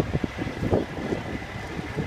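Outdoor roadside noise: wind on the phone microphone over a low rumble of vehicles, with a few short knocks.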